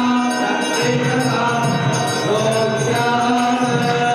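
A group of voices chanting together, with music behind them.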